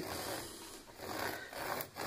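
A pen tip rubbing along thick felt as it traces around the edge of a tablet, a quiet soft rubbing, with a light tap near the end.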